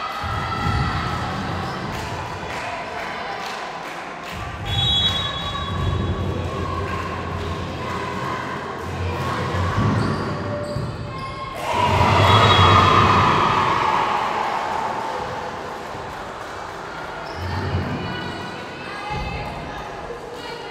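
Echoing sports-hall sound during a volleyball match: a volleyball thumping on hands and floor, with players' voices and calls. A louder burst of shouting rises about twelve seconds in and fades over a couple of seconds.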